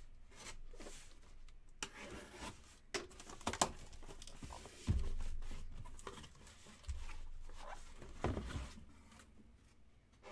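A cardboard shipping case is opened and unpacked, with tape tearing and cardboard rubbing and scraping. Scattered knocks and a few dull thumps come as the boxes inside are handled, the loudest about halfway through.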